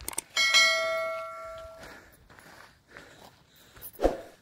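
Bell-like notification ding of a subscribe-button animation: a click, then one struck chime that rings out and fades over about a second and a half. A short thump comes near the end.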